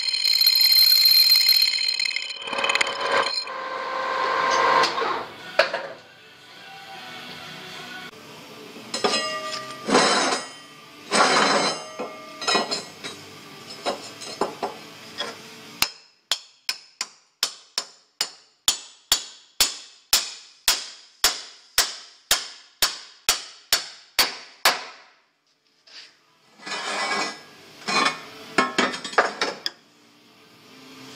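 Hammer blows on metal. Near the start one strike rings on with a sustained bell-like tone. Later comes a run of about twenty sharp, evenly spaced strikes, two to three a second, then a short pause and a few more knocks.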